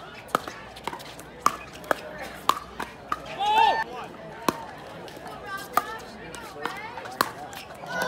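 Pickleball paddles striking the plastic ball in a rally: sharp pops about every half second, pausing about three seconds in while a man's voice speaks briefly before the pops resume.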